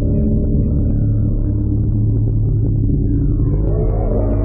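A loud, steady low electronic drone: deep held tones with a rumbling edge. Near the end a cluster of tones sweeps upward in pitch.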